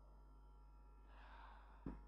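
Near silence, then a faint breath drawn in through a hand-held microphone about a second in, and a soft low thump just before the end.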